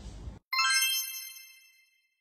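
Outro logo chime: a single bright ding with several high tones struck together about half a second in, ringing away over about a second and a half.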